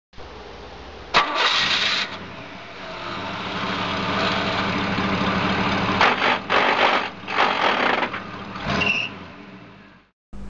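A car engine starting: a short loud burst about a second in, then running with a steady hum. A few louder surges come near the end before the sound fades out.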